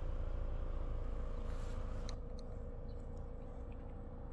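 Steady low hum with a faint steady higher tone underneath a light hiss that fades about halfway through.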